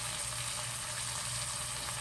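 Chuck roast sizzling steadily as it browns in a ceramic pot over a gas flame.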